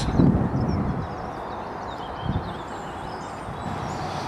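Outdoor ambience by a pond: steady wind noise with faint birds chirping high above it. A louder rumble comes in the first second.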